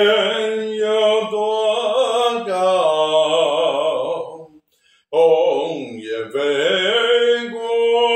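A man singing a slow ballad unaccompanied, holding long notes with a wide vibrato, with one short breath break a little past halfway.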